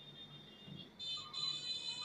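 Faint, steady high-pitched electronic tones. A thin tone is joined about a second in by several more sounding together.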